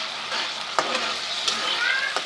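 Onion and ginger-garlic paste frying in hot ghee: a steady sizzle, with two sharp clicks a little under a second apart.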